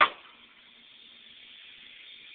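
A 150 µF, 35 V electrolytic capacitor blowing out under power: a sharp pop right at the start, then a steady hiss as it vents, slowly growing a little louder.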